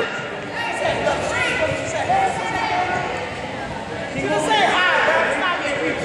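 Voices of spectators and young players chattering and calling out in a gymnasium with a hall echo, rising to a burst of higher, louder voices about four and a half seconds in.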